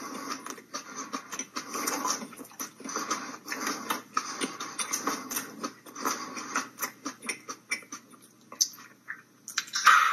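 Close-miked chewing and wet mouth noises of a man eating fresh Carolina Reaper peppers, a fast irregular run of clicks and smacks. A louder burst comes just before the end.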